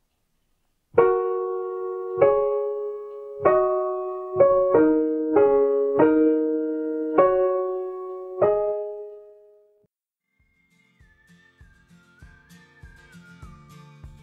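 Digital piano played on the black keys only: a slow pentatonic tune of about nine struck pairs of notes a key apart, each dying away after it is struck, the last left to ring out.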